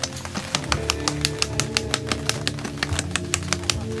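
Background music of plucked guitar with a quick, even run of sharp clicks, several a second.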